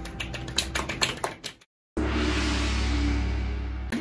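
A small group of people clapping for about a second and a half, cut off abruptly. After a brief gap, a held, steady musical sound with a deep hum and hiss, fading slowly.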